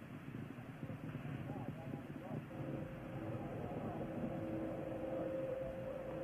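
Low hiss of a narrow-band mission radio loop with faint, indistinct voices. A steady low tone comes in about halfway through.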